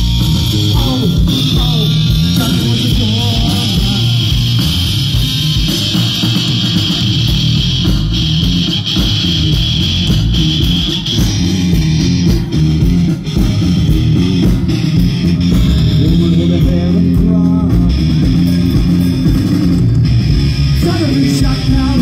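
Live punk rock band playing loudly through a PA: electric guitar and bass guitar in a long stretch without words.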